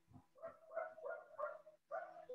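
Faint run of short, high animal calls, about three a second, each on much the same pitch.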